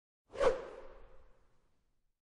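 A single whoosh sound effect for an animated logo, coming in sharply about half a second in and fading away over the next second with a faint lingering tone.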